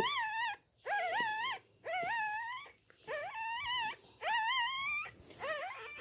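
Miniature pinscher whining: about six short, high cries in a row, each rising and then wavering, with brief pauses between them.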